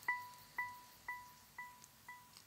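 A single high chime-like ping in the soundtrack, repeated by an echo about twice a second and fading away.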